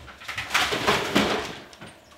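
Items swept off a tiled kitchen countertop by hand: a loud rustling clatter of a chip bag, a box and a carton going over, lasting about a second and dying away near the end.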